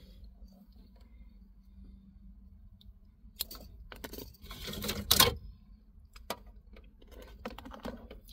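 Wiring being pulled out from behind a truck's dashboard, namely an aftermarket kill switch and its wires. The handling makes a few rustles and plastic clicks, with the loudest scrape of cable about five seconds in.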